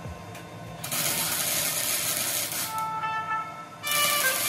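Wire-feed (MIG) welder arc crackling and hissing as a bead is run on the steel frame: one burst from about a second in, lasting under two seconds, then a second burst starting just before the end. Background music plays underneath.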